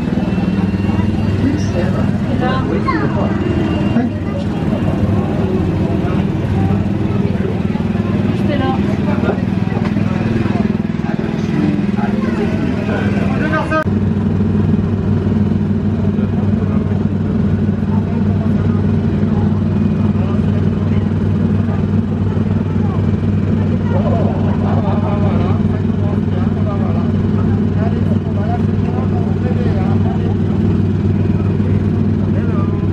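Small petrol engines of Autopia ride cars idling in a steady low hum, with people's voices mixed in. About 14 seconds in the hum becomes steadier and closer.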